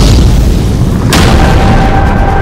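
Cinematic intro sound effects: a deep boom at the start and a second sharp impact about a second in. Dramatic music with sustained notes sets in after the second hit.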